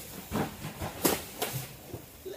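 Cardboard freight boxes being handled by hand: several dull thuds and scuffs as cartons are pulled off the stack and set down, the loudest about a second in.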